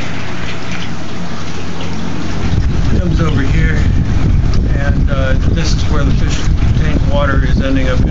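Water from a PVC pipe splashing steadily through a mesh filter sock onto a filter pad in an aquaponics gravel grow bed. A low rumble of air on the microphone comes in about two and a half seconds in and stays.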